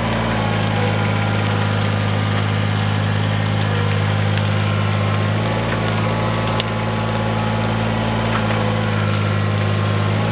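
Kubota compact tractor's diesel engine running steadily while its front loader pushes brush into a pile, with scattered faint cracks over the engine hum.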